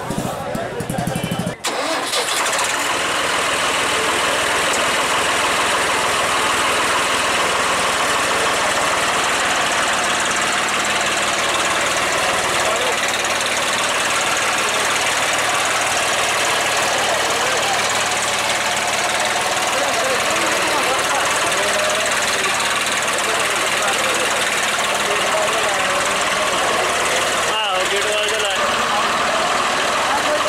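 Modified Swaraj 855 tractor's diesel engine running, with people talking around it. About a second and a half in, the sound cuts from a low, even engine hum to a louder, noisier steady rush.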